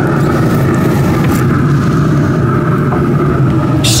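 Pellet grill's draft fan running: a loud, steady hum over a low rumble.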